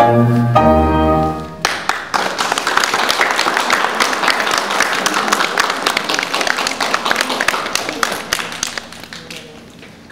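Piano and bass end a waltz on a final chord, then a small audience claps for about seven seconds, dying away near the end.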